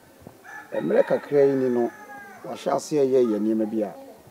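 A rooster crowing twice, each crow about a second long and ending in a held note.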